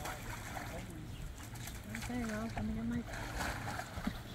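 Water splashing and sloshing as a tiger paws at and wades into a shallow concrete pool with floating ice. Faint voices talk quietly underneath.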